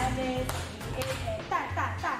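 Dance-practice music with a steady beat about twice a second over a sustained bass, playing under a person's speaking voice.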